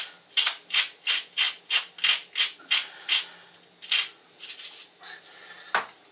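A wooden salt mill being twisted by hand, grinding salt crystals into a mortar. It makes a run of short, regular rasping strokes, about three a second, for roughly three seconds, then a few slower turns near the end.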